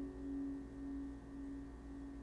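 Last chord of a Taylor 614ce acoustic guitar ringing out and slowly fading. One mid-pitched note dominates, wavering gently in loudness about twice a second.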